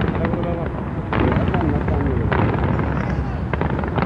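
Aerial fireworks going off in repeated bangs, a louder report about every second amid a crackle of smaller ones, over a steady low rumble.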